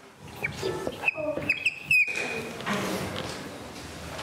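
Dry-erase marker squeaking on a whiteboard as a line is drawn: several short, high squeaks with quick pitch slides in the first two seconds, then a softer steady scratching hiss.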